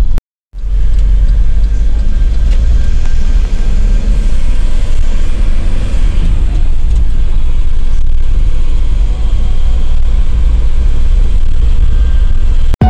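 Loud, steady low rumble of a moving bus's engine and road noise heard from inside the cabin, broken by a brief dropout to silence just after the start.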